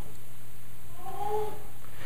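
Steady electrical hum from the church sound system while the preacher's microphone is being switched on, with a faint short rising-and-falling tone about a second in.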